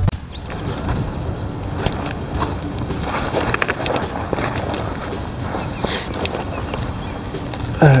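Wind rumbling on a handheld camera's microphone, with irregular scuffs and knocks from handling and from footsteps on shoreline rock.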